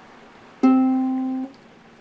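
Ukulele's open C string plucked once about half a second in, ringing for about a second and then damped. It is the lowest note of the instrument's standard G-C-E-A tuning.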